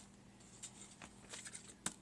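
Faint rustling and light clicks of hands rummaging through tissue paper and ribbons in a cardboard box, with one sharper tap near the end.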